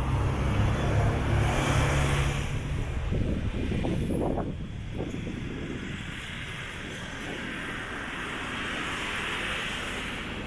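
Road traffic: a bus engine runs nearby with a low steady hum for the first two or three seconds, then fades into a quieter, steady wash of traffic noise.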